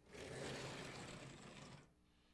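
Vertically sliding blackboard panels being pushed along their tracks: a steady rolling, scraping noise of just under two seconds that stops suddenly near the end.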